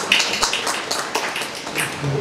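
A few scattered, irregular hand claps from an audience.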